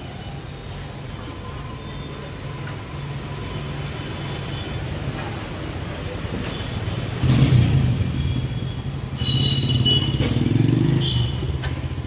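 Petrol being dispensed into a car at a fuel pump: a steady low hum under the running dispenser, joined about seven seconds in by a louder vehicle engine that fades near the end.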